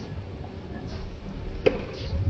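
A tennis ball struck by a racket: one sharp, short pop about one and a half seconds in, over a steady low background noise.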